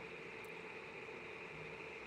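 Faint steady background hiss with a low, even hum; no distinct event.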